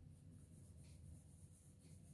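Faint pencil strokes on sketchbook paper while shading a drawing, two short scratches about a second apart.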